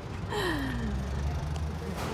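A person's breathy vocal sound, like a long sigh, falling steadily in pitch for about a second, over a steady low hum.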